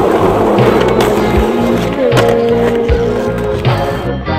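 Skateboard wheels rolling on asphalt as the skater pushes along, mixed with music that has a steady drum beat.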